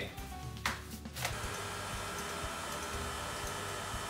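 Electric tilt-head stand mixer starting up about a second in, then running with a steady whir as it mixes flour into creamed butter for cookie dough; a couple of clicks come just before it starts.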